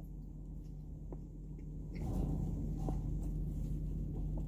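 A man chewing a mouthful of dry grilled chicken sandwich: faint, wet mouth noises and a few small clicks over a low steady hum, with the chewing growing louder about halfway through.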